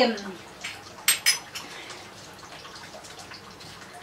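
Metal kitchen utensils clinking against each other or a dish, two sharp ringing clinks close together about a second in, with a few fainter taps around them.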